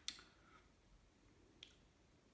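Near silence: quiet room tone, with a short faint click just after the start and a fainter one about one and a half seconds in.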